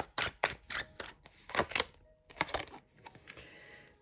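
A deck of tarot cards being shuffled by hand: quick, irregular clicks and slaps of card on card, dense for about two seconds, then sparser with short pauses.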